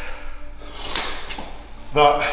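A man breathing hard after a heavy yoke carry, with one sharp, noisy breath about a second in.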